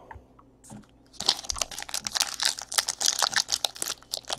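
Trading cards and their plastic packaging handled by hand: quick, dense crinkling and clicking rustle of card and plastic starting about a second in.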